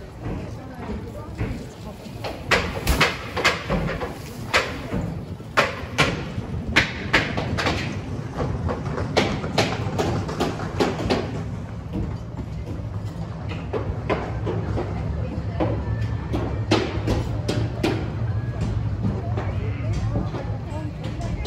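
Footsteps on a paved pedestrian street, about two a second and loudest in the first half, over the talk and murmur of passers-by.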